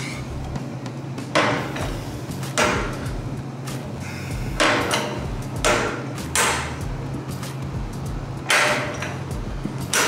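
Manual hand-lever tube bender being worked through a bend in steel tube, giving six metallic clunks one to two seconds apart as the handle is stroked and reset. Background music plays throughout.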